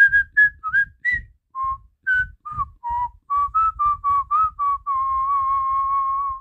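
A person whistling a tune: a quick run of short notes, some sliding up, then one long held note with a slight waver near the end.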